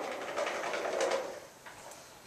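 A few people's voices murmuring indistinctly in response, fading out about a second and a half in.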